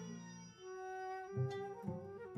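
Kroncong-style string band playing. About half a second in, the plucked low strings stop for roughly a second while a single long melody note is held. Then the plucked bass and guitar pattern comes back in.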